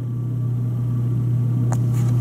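A steady low hum, with a faint short click about three-quarters of the way through.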